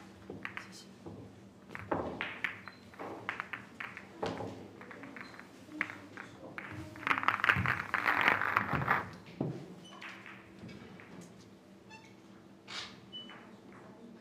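Pool balls clicking against one another as they are gathered from the table and pockets and racked for the break. The clicks are scattered at first, with a louder burst of clattering about seven to nine seconds in as the balls are packed into the rack.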